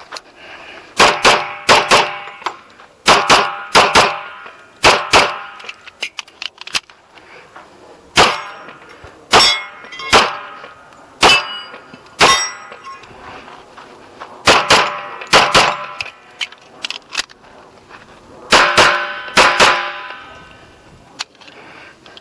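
A Kimber Custom II 1911 pistol in .45 ACP fires a string of about twenty shots. They come mostly in quick pairs and triples, with pauses of one to three seconds between groups, and each shot rings out briefly.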